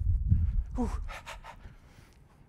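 A man's drawn-out "ooh" falling in pitch, with a little laughter, over a low rumble.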